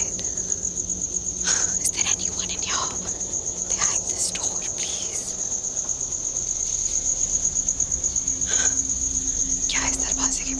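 Crickets trilling, a steady high-pitched tone throughout, with a few soft whispered sounds over it.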